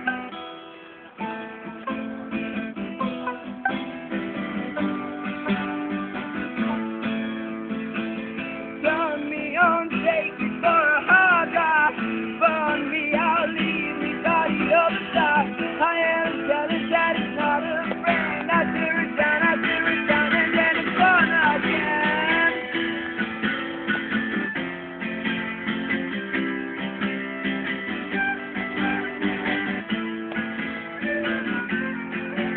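Acoustic guitar strumming chords, with a fiddle playing a wavering, sliding melody over it that comes up louder through the middle of the stretch.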